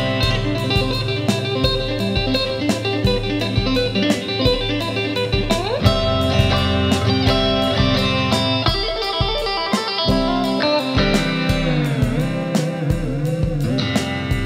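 Electric guitar in FACGCE tuning with a capo, playing a busy math rock riff of picked and tapped notes over a steady beat. It has a rising slide about six seconds in and bending pitches near the end.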